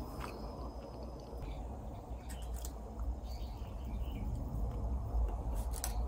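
Quiet room ambience with a steady low rumble, a few faint high chirps, and a few light clicks near the end.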